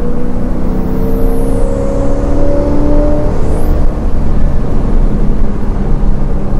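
Blueprint 350 small-block Chevy V8 crate engine breathing through long-tube headers and a 2.5-inch X-pipe exhaust, pulling the car under acceleration at part throttle. The engine note rises steadily for about three seconds, then holds at a steady drone.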